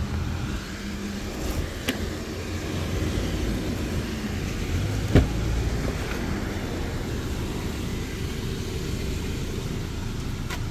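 The front passenger door latch of a 2023 Volkswagen Tiguan clicks open once, sharply, about five seconds in, with a fainter click a few seconds earlier. A steady low rumble runs underneath.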